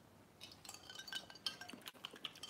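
Faint, scattered clicks and small clinks of drinking glasses being sipped from, starting about half a second in, some with a brief ring.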